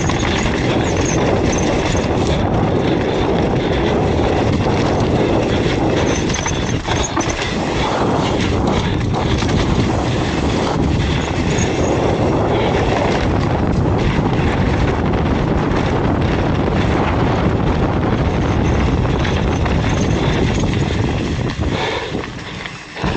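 Hardtail mountain bike clattering down a rough dirt trail: knobby tyres rolling over dirt and roots, with a constant rattle of chain and frame over the bumps.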